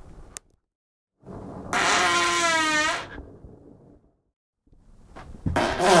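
A man breaking wind, one long pitched fart of about a second and a half whose tone sags slightly towards its end.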